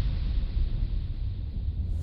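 A deep, steady low rumble with a thin hiss above it: a trailer sound-design drone.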